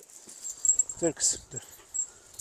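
Metal chain leashes clinking in short bursts as two large Turkish shepherd dogs pull and play at the end of them, with a brief vocal sound about a second in.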